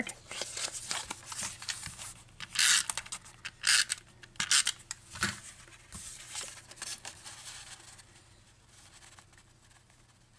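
Cardstock and paper being handled on a work mat: a series of short scraping and rustling sounds as a card is opened and a panel slid into place, dying away near the end.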